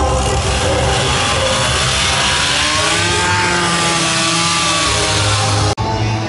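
Gas chainsaw running while carving wood, its engine pitch rising and falling with the cut; the sound breaks off suddenly near the end.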